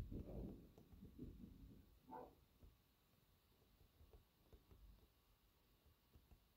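Near silence: faint rustling of wool locks being handled on bubble wrap in the first two seconds, with a brief faint pitched sound about two seconds in.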